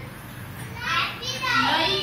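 Young children calling out answers in high voices, louder from about a second in.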